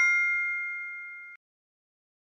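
The fading ring of a bright two-note chime, its clear high tones dying away steadily and then cutting off suddenly about a second and a half in, leaving complete silence.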